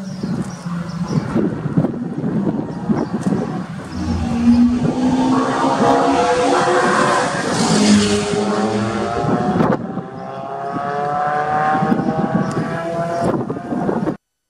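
Lotus sports car's engine heard from trackside, revving hard with its pitch climbing through a gear. It lifts briefly about ten seconds in, then climbs again.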